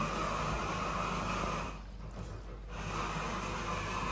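A steady hiss with no distinct knocks or tones, which dips away for about a second in the middle.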